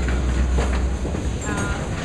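Low, steady rumble of a candlepin bowling ball rolling on the alley, with a few faint clicks over it.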